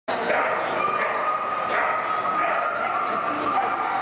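A dog yipping and whining, with one long high whine through the middle, over the chatter of people in an arena.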